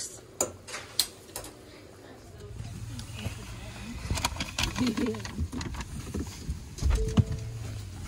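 A pot bubbling at a rolling boil on the stove, with scattered pops, for about two seconds. Then comes the steady low rumble of a car cabin, with a sharp click near the end.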